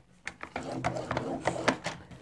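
Cardstock being scored and slid on a paper trimmer with a clear plastic scoring and cutting rail: a run of irregular small clicks and scrapes of paper and plastic, starting about a quarter second in.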